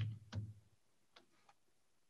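A quiet pause with a few faint short clicks: two in the first half-second, then two fainter ticks about a second and a half in.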